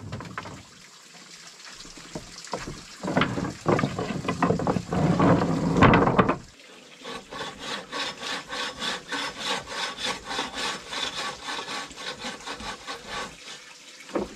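Wood knocking and rattling on a plank floor as boards are handled, loudest just before the middle. Then, after a brief pause, a bow saw cutting through a small log in quick, even back-and-forth strokes.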